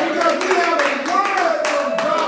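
A man's voice preaching loudly and excitedly, over a run of hand claps.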